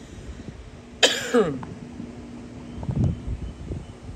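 A person coughs once about a second in, the sound dropping in pitch. A dull low thump follows near the three-second mark.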